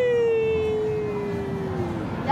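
A long, drawn-out "wheee" from a single voice, held for about two seconds with its pitch sliding slowly down before it stops near the end.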